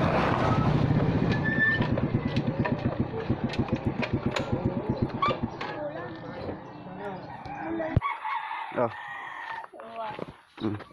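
Motor scooter engine running, its beat slowing into spaced-out pulses as the scooter coasts down, with roosters crowing. The engine sound cuts off abruptly about eight seconds in.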